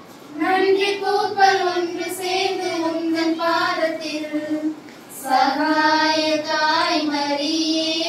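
A group of women singing a slow song together in unison, with long held notes; the singing pauses briefly for a breath about five seconds in.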